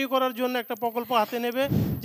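A woman speaking into a microphone. Near the end her voice is cut off by a short, low rumbling thump of microphone handling noise.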